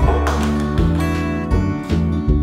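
Background music led by acoustic guitar, with plucked and strummed chords changing every half second or so.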